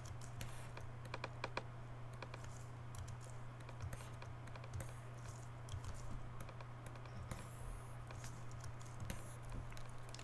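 Faint, scattered clicks of a computer keyboard and mouse over a steady low hum.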